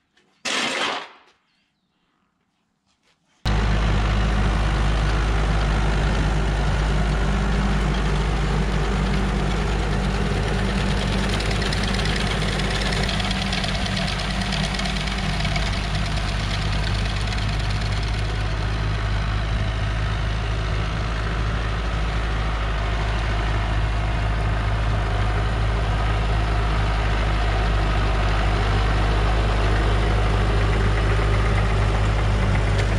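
A shovel scrapes once at the very start. From about three seconds in, a John Deere 5820 tractor's diesel engine runs steadily at an even speed, with a dense mechanical clatter above the engine note.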